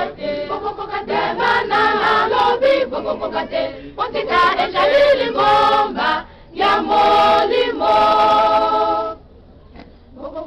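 A choir singing, with a long held chord near the end that stops suddenly about nine seconds in.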